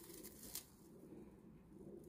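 Near silence: faint rustling of straw and soil as a potato plant is pulled up out of a fabric grow bag, with one soft brief sound about half a second in.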